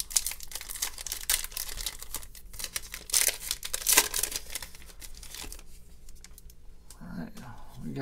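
Foil wrapper of a Panini Flux basketball card pack crinkling and tearing as it is pulled open by hand. The crackling is busy for the first five seconds or so, then dies down.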